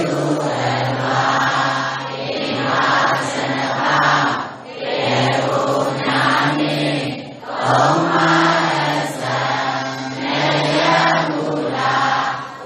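Many voices chanting together in unison, a Buddhist recitation in held phrases a few seconds long with brief breaks between them.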